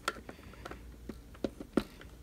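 Small flat-blade screwdriver tip clicking and scraping against the plastic of a robot vacuum's rocker power switch as it pries the switch's retaining tabs out of the housing. A scatter of light clicks, with two sharper ones near the end.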